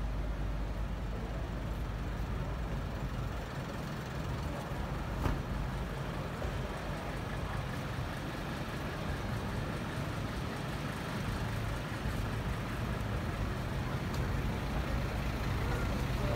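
Steady low rumble of vehicle engines running close by on a city street, with one short click about five seconds in.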